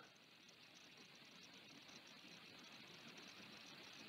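Near silence: faint steady background hiss.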